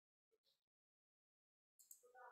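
Near silence, with a couple of faint brief sounds about half a second in and a faint noise starting just before the end.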